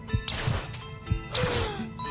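Cartoon defibrillator sound effect: two sharp electric zaps about a second apart, each trailing off in a falling tone, as paddles shock an egg in a resuscitation attempt. Background music and short steady beeps run underneath.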